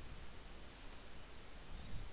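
Faint room hiss with a brief, faint high-pitched chirp about a second in.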